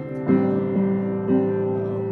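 Piano playing slow chords, a new chord struck about every half second and each left ringing.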